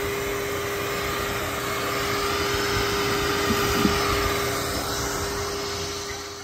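Vacuum running steadily with a constant droning tone, sucking live yellow jackets through a hose into a clear collection jar.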